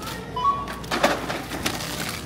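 A self-checkout scanner beep: a short tone that steps up slightly in pitch, about half a second in. It is followed by a burst of rustling and clatter as groceries and bags are handled, the loudest sound, about a second in.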